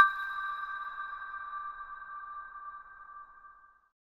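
An electronic chime sting for a closing logo: two high steady tones sounding together, loudest at the start and slowly fading away over nearly four seconds.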